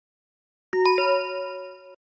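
Chime sound effect marking a slide change. Two bell-like notes strike about a quarter second apart, the second one higher, then ring together and fade for about a second before cutting off.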